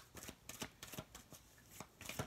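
Tarot deck being shuffled by hand: a faint, fast run of papery card clicks.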